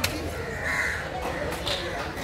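A crow cawing just under a second in, with a second shorter call near the end. A single sharp chop of a cleaver cutting through manta ray flesh into a wooden block comes right at the start.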